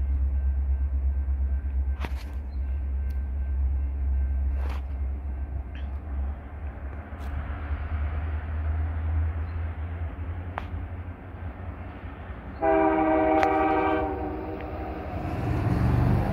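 A steady low rumble, then about two-thirds of the way through a single horn blast of about a second and a half from an approaching freight train's lead locomotive, a CN EMD SD70M-2, sounding its horn for a grade crossing. Near the end the train's noise begins to swell as it draws closer.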